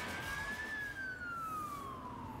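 Emergency-vehicle siren: a single wail that rises briefly, then falls steadily for about two seconds.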